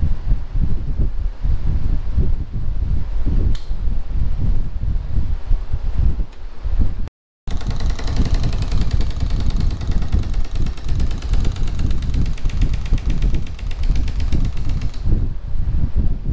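Pneumatic rivet gun, turned down to a low setting, hammering in a rapid, continuous burst of blows on an aluminum closeout tab to bend it over a clamped edge for an aircraft elevator trim tab. The hammering starts about halfway through, after a low rumble, and lasts about seven seconds before stopping near the end.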